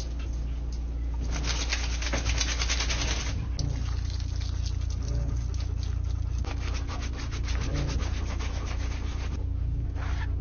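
A wet dog's coat being scrubbed and rubbed in a stainless-steel grooming tub: rapid rasping in stretches, pausing briefly about a third of the way in and again near the end. A steady low hum runs underneath.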